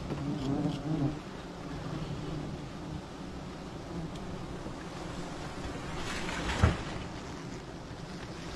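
Honeybees buzzing around a wild comb as it is harvested, a steady hum that is strongest in the first second. A single thump about six and a half seconds in.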